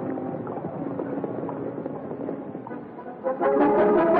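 Orchestral western film score with galloping horse hoofbeats. The music is quieter at first, then brass comes in loudly a little over three seconds in.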